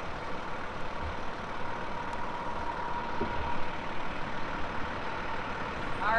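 Fire engine's engine idling steadily, a low rumble under outdoor background noise.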